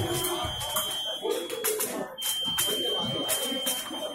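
Electric fencing scoring machine sounding a steady high-pitched tone, cut off briefly about two seconds in, over people talking in the hall.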